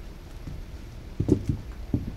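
Wedge sandals handled on a tabletop: a few short, soft knocks of the soles against the table in the second half, as shoes are set down and picked up.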